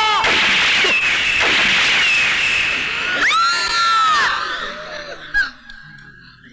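Loud, high-pitched screams: one drawn-out cry at the start and another about three seconds in, over a dense noisy wash, with a short sharp crack about five and a half seconds in, in a film scene where a man is shot with a pistol.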